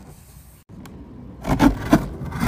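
Scraping on a cardboard box, then scissors slitting the taped seam along its top, with louder, rougher scrapes in the last half second.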